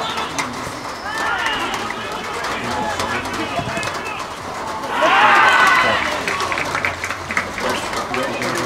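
Footballers shouting across an outdoor pitch during an attack, then a loud burst of shouting about five seconds in as a goal is scored.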